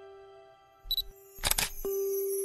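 Soft background music, a held piano-like note fading away, then a camera sound effect: a short high beep followed by a shutter click about a second and a half in, before the music picks up again.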